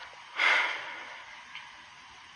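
A man's single short, sharp breath, about half a second in, with no voice in it.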